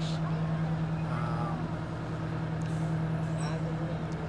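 Fire trucks rolling slowly past, their engines making a steady low drone, with faint voices in the background.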